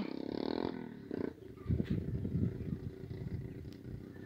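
Wind buffeting the microphone on an open grassy ridge: a low, irregular rumble that comes in gusts, strongest in the second half.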